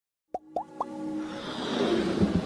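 Logo intro jingle: three quick rising plops about a quarter second apart, then a swelling whoosh with a held low tone that builds toward the end.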